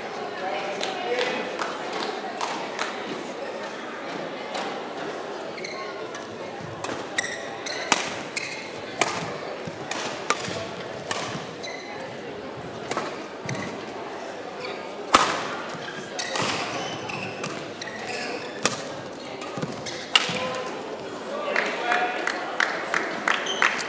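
Badminton rackets striking a shuttlecock in a singles rally: sharp hits roughly a second apart from about seven seconds in, the loudest about fifteen seconds in, over a steady murmur of voices in a large hall.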